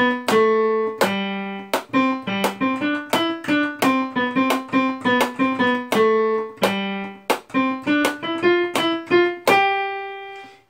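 Yamaha digital piano playing a single-line melody in the middle register, note by note. A sharp click marks each beat of the pulse. The last note is held and fades away near the end.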